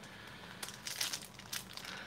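Foil trading card pack wrapper crinkling in the hands, a run of soft crackles as the pack is picked up and its top seam is pinched to tear it open.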